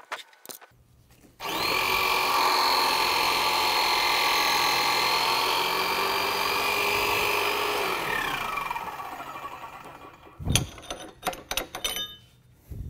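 Electric motor of a hydraulic pump driving a guided-bend tester, running steadily for about six seconds as it bends a welded pipe test strap, then falling in pitch and winding down as it is switched off. A few sharp metal clinks follow near the end as the bent strap is handled.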